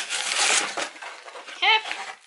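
Cardboard shipping box being pulled open by hand: a rustling, scraping noise of the cardboard flaps in the first second, which then dies away.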